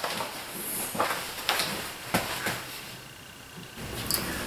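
A few light knocks and clicks of tools and wood being handled on a workbench, about five spread over the first two and a half seconds, then quieter near the end.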